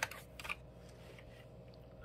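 Faint clicks of handling noise in the first half second, then a quiet room with a faint steady hum.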